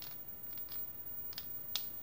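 A TV remote control's buttons pressed repeatedly, giving a few light, separate clicks, the sharpest near the end; the remote is gunked up and the TV does not respond.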